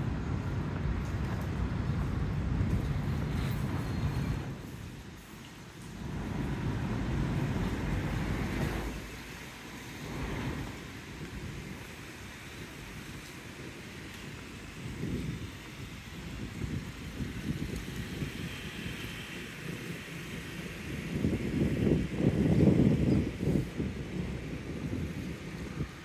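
Wind buffeting the microphone, a low rumble that rises and falls in gusts and is strongest about three-quarters of the way through.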